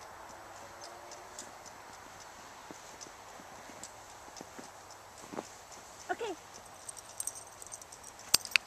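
Footsteps crunching in snow, light and uneven, over a steady outdoor hiss, with a short call from a person's voice about six seconds in.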